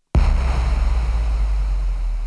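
A deep low rumble comes in suddenly just after the start, with a wash of hiss over it, and slowly fades: the opening of the podcast's outro music.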